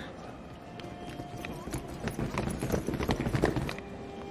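Rapid footsteps of several people running on a hard floor, a dense clatter of strides that grows louder past the middle and cuts off just before the end.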